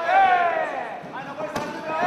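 Kickboxing bout: a loud shout falling in pitch at the start, then a single sharp thud of a strike landing about a second and a half in.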